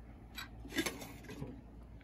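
Metal crucible tongs clicking against a porcelain evaporating dish as they grip it: three light clinks about half a second apart, the middle one loudest.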